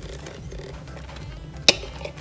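Shredded Swiss cheese tipped from a plastic container into a saucepan of cream sauce and pushed out with a fork: faint soft sounds, with one sharp tap near the end.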